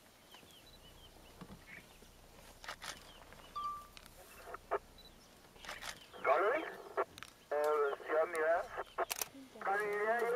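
Scattered faint snaps and cracks of twigs and branches as elephants feed and move among the trees. From about six seconds in, a man's voice comes over a two-way radio in thin, tinny bursts.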